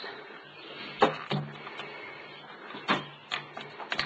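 Clicks and knocks of milking-machine parts being handled as hoses and the pulsator are taken off a stainless steel milk bucket lid: a couple of sharp knocks about a second in and a few more near the end.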